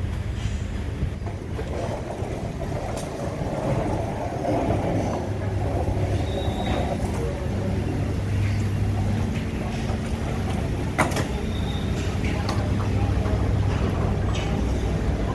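Steady low hum of the high-speed ferry Santorini Palace's machinery on its vehicle deck while passengers disembark, with footsteps and a wheeled suitcase rolling over the deck, and a single sharp knock late on.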